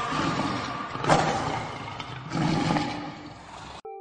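The closing moment of the soundtrack: a dense, noisy rush of sound with a sharp hit about a second in and another swell later, fading and then cut off abruptly just before the end, followed by a brief low tone.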